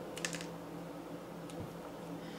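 A quick cluster of small plastic clicks, about four, from a pen-style lancing device being handled as the lancet is slid forward and ejected, then one faint click later, over a steady low hum.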